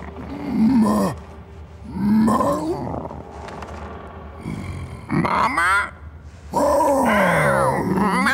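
Growls and grunts from a mutant snapping turtle and wolf creature, voiced for film. There are four separate calls, the third with a fast rattling trill and the last one long and falling in pitch.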